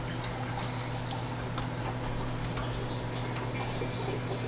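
Hot gear oil draining in a steady, free-flowing stream from a Subaru WRX six-speed manual transmission's drain hole into a drain pan, over a steady low hum.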